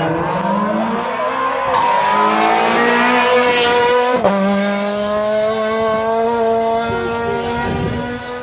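Citroën C2 rally car's engine revving hard as it accelerates toward and past the microphone, the note climbing steadily for about four seconds. A short sharp break comes as it passes close, then the engine holds a steady high note that fades as it pulls away.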